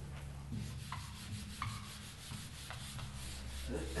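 Whiteboard eraser rubbing across a whiteboard in repeated short strokes, wiping off marker writing, over a steady low hum.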